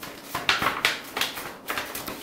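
A sheet of stiff drawing paper being folded in half and creased by hand, giving four short, sharp crackles and rustles.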